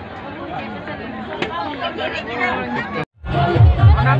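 Several people's voices chattering over one another for about three seconds, then the sound cuts out abruptly. It comes back louder as music with heavy, regular bass beats and a crowd's voices.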